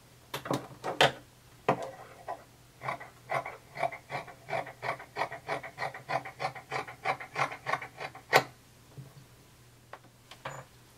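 Fabric being cut off along a ruler: an even run of short cutting strokes, about four a second. A few light knocks from the ruler being set down come before it, and a single sharper click comes near the end.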